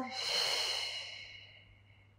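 A woman's long, audible exhale, a paced breath-out held in a Pilates side-bend stretch, fading away over about a second and a half.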